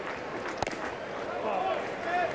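Ballpark crowd noise, with a single sharp smack about half a second in as a 94 mph fastball hits the catcher's mitt. A voice calls out briefly near the end.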